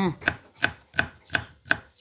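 Kitchen knife chopping red onion on a thick wooden board: a run of sharp, evenly spaced knocks, about three a second.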